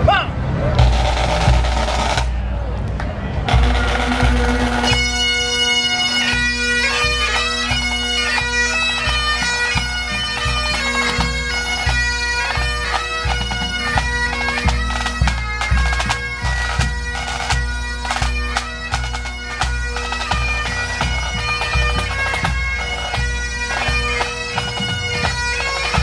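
Highland pipe band striking in: drum rolls, then the bagpipe drones come in about four seconds in and the chanters start the tune a second later. The band then plays a march over a steady bass drum beat.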